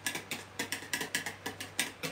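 Hand whisk beating whipped cream in a plastic bowl: a fast, even run of clicks, about six or seven strokes a second, as the wires strike the bowl. The cream is already whipped to a fluffy consistency.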